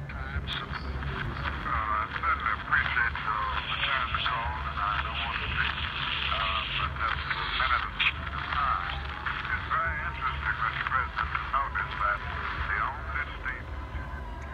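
Recorded telephone conversation played back by an exhibit, the voices thin and narrow-band like a phone line, over a steady low hum.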